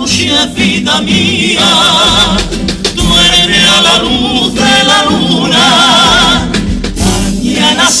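Comparsa male chorus singing in several voices, holding long notes with vibrato.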